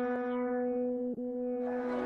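A steady, held electronic tone with a buzzy ring of overtones, unchanging in pitch, with faint ticks about a second apart.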